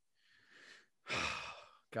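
A man's breathy sigh, a long exhale lasting almost a second, after a fainter breath about half a second in.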